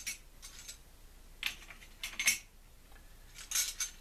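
Light metallic clinks, about half a dozen spread unevenly, as metal bus bars and terminal hardware are handled and set onto the battery cell terminals.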